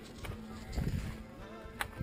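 Ford 5000 tractor's diesel engine running with a faint steady hum and a few soft low thumps, while air is bled out of its airlocked fuel lines at the loosened line nuts.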